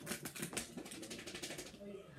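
A fast run of light clicks and taps, about a dozen a second for the first second and a half, from hands handling a cardboard advent calendar playset.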